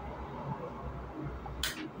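Faint handling sounds of a plastic sour cream tub as fingers pick at its sealing tab, which won't tear off, with small ticks and one short crackle near the end.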